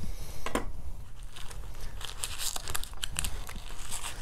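Hands rummaging in a nylon first aid pouch, with plastic packaging crinkling and rustling in short irregular bursts, busier in the second half, as a sealed space blanket packet is drawn out.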